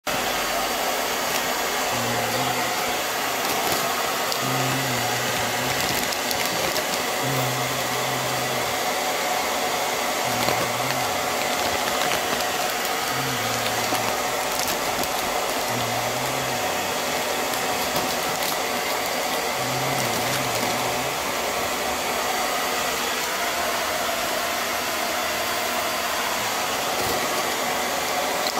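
Steady rushing air noise from a running fan-type appliance. A faint low hum comes and goes every two to three seconds.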